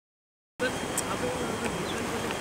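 Silence for about half a second, then outdoor background noise cuts in suddenly and runs on as a steady hiss with faint scattered chirps and ticks.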